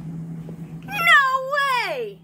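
A cat's single long meow, about a second long. It rises slightly, wavers, then drops sharply in pitch at the end.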